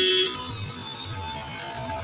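A vehicle horn sounding loudly and cutting off suddenly about a quarter second in, followed by lower road and traffic noise.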